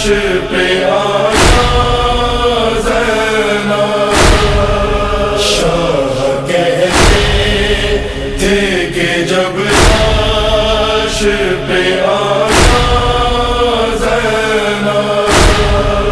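A chorus of voices chanting the lament's melody in a slow, drawn-out interlude, with a heavy beat about every three seconds.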